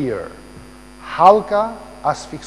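A man talking in Albanian over a steady electrical hum that carries on unchanged through the pause between his phrases.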